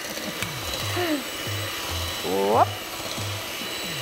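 Electric hand mixer running, its beaters whisking butter and sugar in a stainless steel bowl, over background music with a steady low beat.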